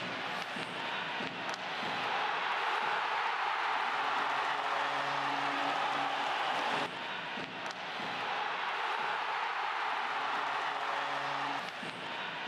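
Ice hockey arena crowd cheering and applauding after a goal, a steady roar of many voices. A low held tone sounds twice, each time for about two seconds, and the crowd noise drops abruptly about seven seconds in.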